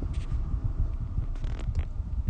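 Low, uneven rumble of background noise with a few faint clicks.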